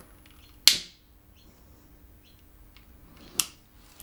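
Long-nosed utility lighter clicking as it is used to light a candle: one sharp click about half a second in and a softer click near the end.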